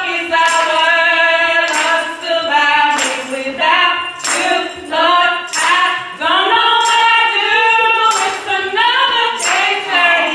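A group of girls singing a gospel song together, with long held notes and gliding melodic lines.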